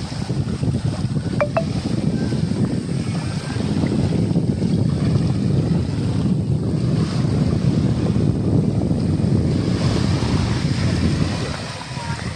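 Sea wind blowing across a phone microphone, a steady gusting low rumble, over the wash of small waves in shallow water along a beach.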